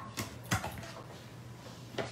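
A few faint clicks as acrylic cutting plates are pushed into a small hand-crank die-cutting machine, then quiet room tone with a low steady hum.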